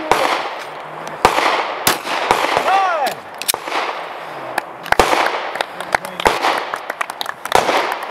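Several sharp gunshots fired at uneven intervals from a shooting competition's firing line, the loudest coming about one to two seconds in and again around five seconds.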